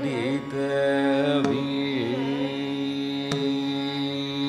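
Carnatic music in Raga Thodi: a long, held melodic line with slow gliding ornaments over the steady drone of tanpuras. Two brief clicks come about a second and a half in and near the end.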